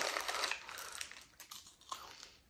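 Plastic wrapper of a small Skittles candy packet crinkling as it is handled, loudest at the start and fading away within about a second, with a couple of faint clicks after.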